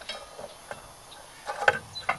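Scattered metallic clicks, then a louder crunching clank about one and a half seconds in, as a rust-seized engine is forced round with a homemade tool on its timing-belt end.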